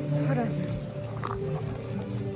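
Singing with instrumental accompaniment from the church, held on steady notes, with a short falling squeak about a quarter-second in and a sharp click a little after a second in.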